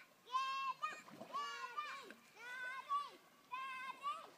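A child's high voice calling out in drawn-out shouts, four times, about a second apart.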